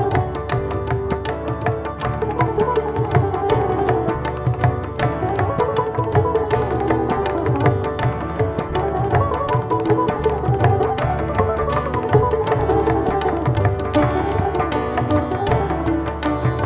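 Sitar playing a plucked melody over a dense, continuous stream of tabla strokes, in an Indian classical instrumental piece.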